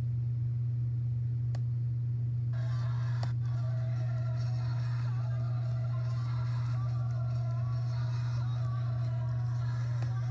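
A loud steady low hum runs throughout. About two and a half seconds in, a recording of music with voices starts playing back, quieter than the hum.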